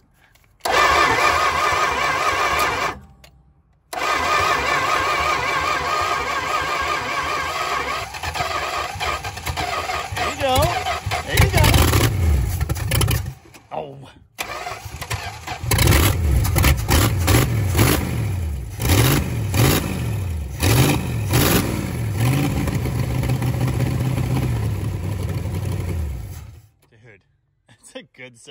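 A 1957 Plymouth Belvedere's V8 cranking on the starter, then firing on ether sprayed into the carburetor. It runs unevenly, its pitch rising and falling as it is revved, and stops near the end.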